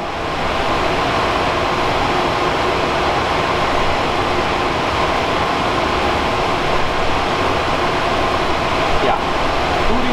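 Cooling fans of rack servers running, a loud steady whir with faint steady hum tones under it.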